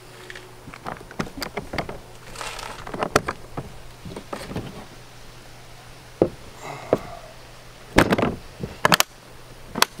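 Pelican Vault V770 hard polymer rifle case being handled: a run of plastic clicks and knocks as the case is opened and a rifle is laid into its foam. Near the end come several sharp snaps as the lid is shut and the latches close.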